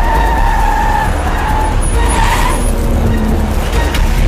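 A car driving fast toward and past the camera, its engine loud and steady, with tyre squeal in two stretches: near the start and again around halfway.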